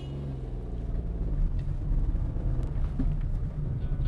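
Small Citroën C1 hatchback driving off along a lane: engine and tyre noise, with the engine tone clearest in about the first second.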